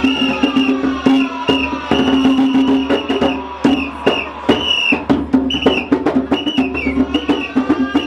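Traditional African drumming on a djembe-style hand drum: fast, sharp hand strokes in a driving rhythm, over music with sustained pitched tones and a high wavering melodic line.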